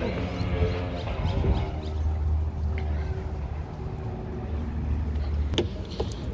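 Parking-lot ambience: a steady low rumble with faint voices, ending in a single sharp click about five and a half seconds in as a car door is unlatched.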